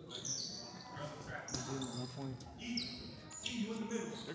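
Basketball shoes squeaking on a hardwood gym floor: many short, high squeaks, some gliding in pitch, overlapping one another, with voices echoing in the gym behind them.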